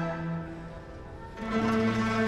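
Chinese traditional orchestra playing: a held low note fades into a quieter passage, then the ensemble comes back in louder with sustained chords about a second and a half in.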